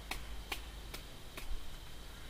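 A run of light, sharp clicks, roughly two a second and a little uneven, over a faint steady background hum.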